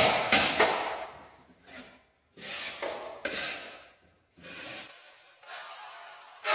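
A drywall finishing tool scraping joint compound out of the inside corners in about five separate strokes, the first the loudest.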